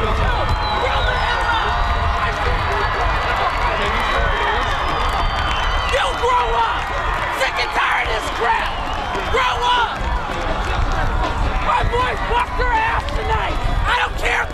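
Many voices shouting and cheering at once as football players celebrate on the field. Short shouts ring out over a steady crowd babble, thickening about halfway through.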